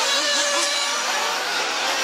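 Small nitro engines of 1/8-scale off-road RC buggies racing, their pitch rising and falling as they rev on and off the throttle through the corners.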